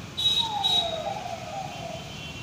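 A distant siren-like wail, one tone falling slowly in pitch for about a second and a half, over steady street background noise.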